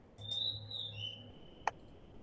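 A faint, high whistle-like tone that slides down in pitch over a low hum for about a second, then a single sharp click about a second and a half in.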